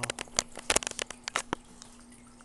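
Camera handling noise: a quick run of irregular sharp clicks and crackles as the handheld camera is moved back, dying away after about a second and a half, over a low steady hum.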